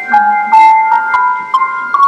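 Synthesized single notes from a plant-music device that turns a plant's electrical signals into notes. They climb in small steps, about three notes a second, which the speaker hears as the plant heading for the top of the keyboard in search of its word.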